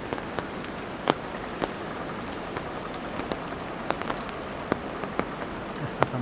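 Light rain: a steady hiss, with single drops tapping close by at irregular moments, about two or three a second.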